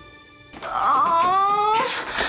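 A woman's drawn-out, strained wail of effort begins about half a second in and is held for over a second, as she tugs at a stuck door.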